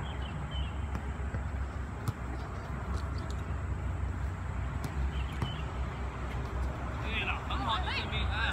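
Footballs being kicked on an artificial-turf pitch: several sharp knocks, the loudest about two seconds in, over a steady low rumble, with voices calling out near the end.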